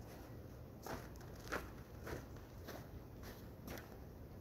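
Faint footsteps in snow at a steady walking pace, six soft steps.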